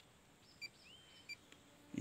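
Two faint short electronic beeps, about two-thirds of a second apart, from key presses on a Gowin TKS-202 total station's keypad, with a brief rising whistle between them.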